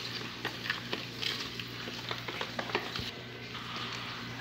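A utensil stirring a runny mixture of milk, oil, sugar and margarine in a plastic bowl: irregular small taps and scrapes against the bowl with liquid swishing, easing off about three seconds in.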